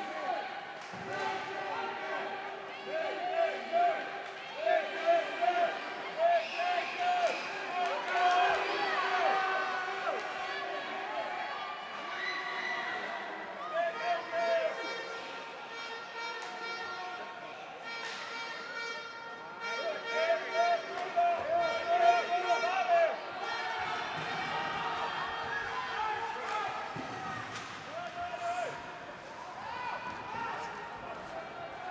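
Ice hockey rink sounds: players' unintelligible calls and shouts, with irregular knocks of sticks and puck on the ice and boards.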